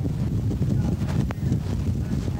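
Wind buffeting the microphone, a steady low rumble, with one sharp click a little past the middle.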